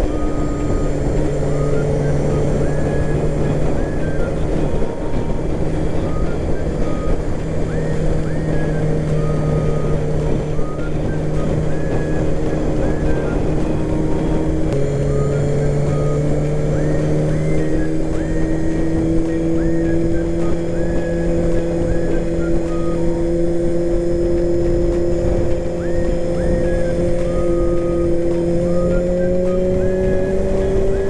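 Honda CBR250R motorcycle engine running steadily under way, with wind and road noise. About halfway through the engine note drops in pitch, then climbs slowly.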